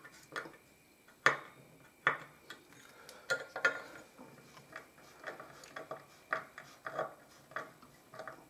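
Small screwdriver turning a machine screw down through a circuit board into a tapped hole in an aluminium heatsink: irregular sharp clicks and ticks of metal on metal as it is worked round, a few louder than the rest.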